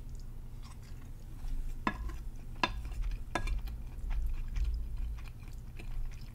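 Close-up chewing of a mouthful of mapo tofu, with wet mouth clicks and smacks, the sharpest a few seconds in.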